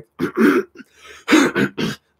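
A man clearing his throat in several short, rough bursts.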